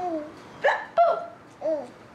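Several short, high-pitched playful vocal sounds, wordless coos and laugh-like calls that rise and fall in pitch, made to amuse a baby during peek-a-boo.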